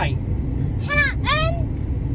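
A young girl's high-pitched two-part exclamation about a second in, over the steady low rumble of road noise inside a moving car's cabin.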